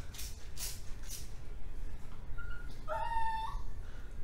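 Three quick hissing squirts from a trigger spray bottle misting hair, then a house cat meows near the end: a short high mew followed by a longer meow.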